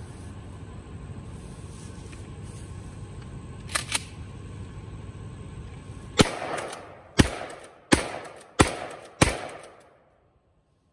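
Mossberg 590 Shockwave 20-gauge pump-action shotgun fired five times in quick succession, under a second apart, each shot ringing out briefly. Two quick clicks come a couple of seconds before the first shot.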